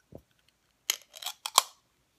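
Handling noise on a phone held close to the microphone: a soft thump, then a cluster of sharp clicks and taps about a second in.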